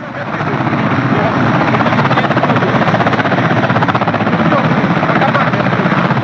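Loud helicopter rotor noise, swelling over the first second and then holding steady with a fast, even beat of the blades.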